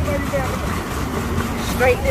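Steady low rumble of wind on the microphone and water churned by a swan pedal boat's paddle wheel as it is pedalled hard in reverse, with voices over it and a louder call near the end.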